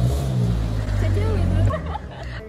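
A road vehicle's engine running close by, low-pitched, rising briefly at the start, then holding steady and stopping short near the end. Faint voices over it.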